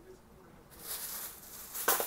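Plastic packaging crinkling as it is handled, starting about two-thirds of a second in, with a sharp crackle near the end.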